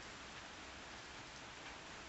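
Faint, even rain falling steadily.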